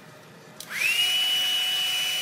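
Handheld hair dryer switched on about half a second in: its motor whine rises quickly to a steady high pitch over a rush of air.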